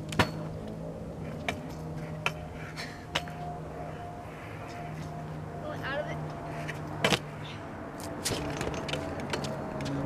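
Stunt scooter landing a bar spin fakie on concrete with a sharp clack just after the start, followed by scattered clicks and knocks of the scooter rolling and rattling, another loud clack about seven seconds in, and a flurry of clicks near the end. A steady low hum runs underneath.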